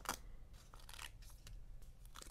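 Small scissors snipping through a glossy sticker sheet: one sharp snip just after the start, then a few fainter cuts.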